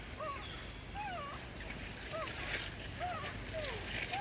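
Baby macaque giving a string of short, squeaky whimpering calls, each rising and falling in pitch, about one or two a second.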